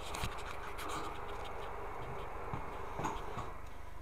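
Scratching and rubbing handling noise from something brushing over the recording device's microphone, with scattered faint clicks over a steady low hum.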